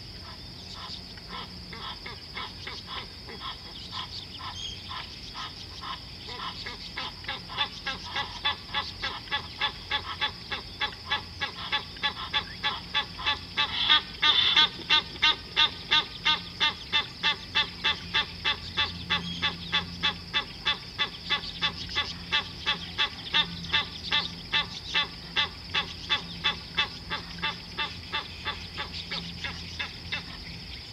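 An animal calling over and over in a steady rhythm, about two calls a second. The calls start faint, are loudest around the middle and stop just before the end.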